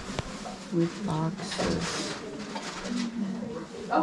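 Indistinct voices of other people talking at a distance, low-pitched and drawn out, with a few light clicks of handling.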